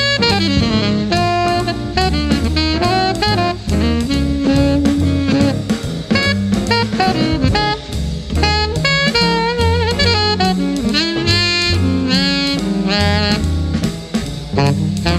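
Jazz alto saxophone solo of quick, ornamented runs of short notes. Behind it a big band's rhythm section keeps time on drum kit and double bass.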